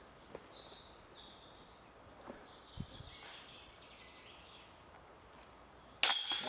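Faint songbirds chirping and trilling in quiet woodland, with a few soft clicks.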